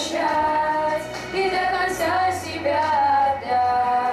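Children singing a song into microphones over music, holding long sung notes.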